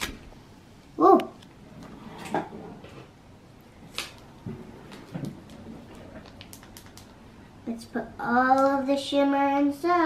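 Faint ticks and crinkles of a small foil powder packet being tapped and squeezed, then a child singing a few long held notes near the end.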